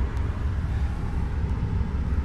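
Steady low rumble of a vehicle driving slowly, engine and road noise heard from inside the cabin.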